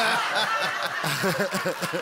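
Studio audience and panellists laughing together at a joke: many overlapping voices chuckling and laughing.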